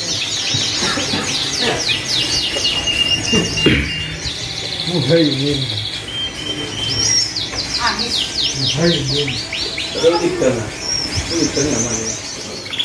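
A great many caged canaries calling and singing at once: a dense, continuous chatter of high chirps, with a fast trill about four to six seconds in. The birds are imported stock packed in stacked wooden shipping crates.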